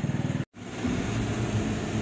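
A vehicle engine running with a fast, even pulse breaks off suddenly about half a second in. A car engine then runs low and steady, heard from inside the cabin.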